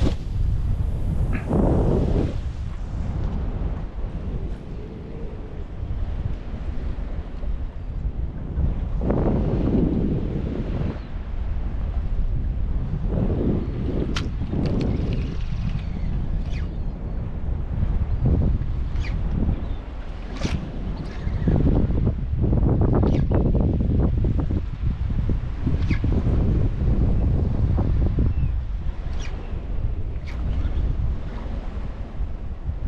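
Wind buffeting the microphone in gusts, a heavy low rumble that swells and eases, over the wash of choppy moving water.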